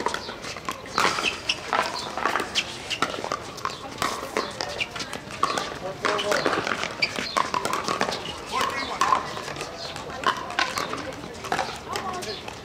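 Pickleball paddles striking hard plastic balls, sharp pocks at irregular intervals from several games on neighbouring courts, over the background chatter of players' voices.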